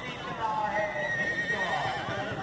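Horse whinnying: several falling, wavering calls one after another, with voices in the background.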